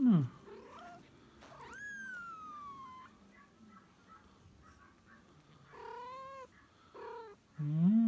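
A very young kitten mewing: one long, high mew that falls in pitch, then a shorter mew and a brief one near the end.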